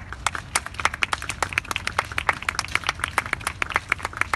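Scattered clapping from a small group of people: many sharp, irregular claps, several a second, throughout.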